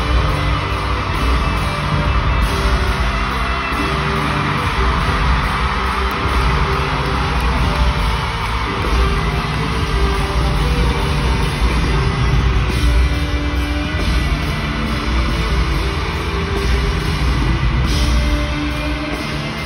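A live rock band playing loudly and steadily in an arena: electric guitar with drums.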